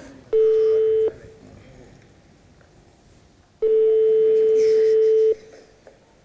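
Telephone ringback tone of an outgoing call ringing unanswered. A steady single-pitch tone is heard twice: a short burst near the start and a longer one of about a second and a half.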